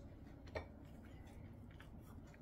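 A single light click of a utensil against tableware about half a second in, followed by a few faint ticks over low room tone.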